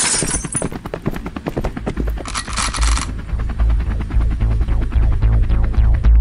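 Electronic dance track laced with a rapid rattle of gunfire sound effects and two short bursts of hiss, one at the start and one about two seconds in. A pulsing bass comes in about three and a half seconds in.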